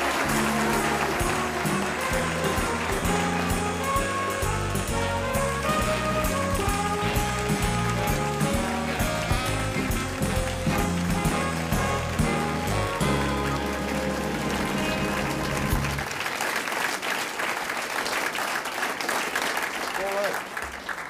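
Band playing walk-on music with a bass line and melody over audience applause; the music stops about sixteen seconds in and the applause carries on.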